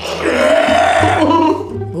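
A long, loud burp lasting about a second and a half, over background music.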